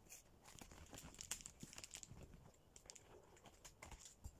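Faint crinkling and rustling of a paper gift bag and its wrapping being handled, with scattered small ticks.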